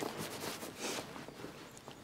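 Soft rustling of a fabric jacket being lifted and draped over someone's shoulders, in a few short swishes.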